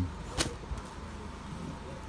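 A single sharp click about half a second in, from handling plastic-wrapped bedding, followed by faint handling noise.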